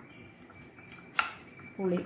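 A steel spoon clinks once against a glass bowl while stirring a thick chilli paste: one sharp clink with a short ring.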